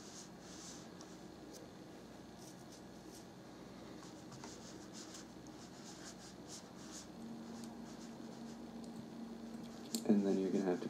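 Faint scraping and light clicking of paperclip lock picks working a pin-tumbler lock, heard from a lockpicking video playing through computer speakers. A low steady hum joins about seven seconds in.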